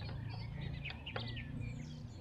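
Birds chirping and calling in short high notes over a low steady background hum, with a small click about a second in.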